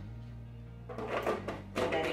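Plastic food processor lid being set onto the bowl and fitted into place: a run of small plastic clicks and clatters starting about a second in, over quiet background music.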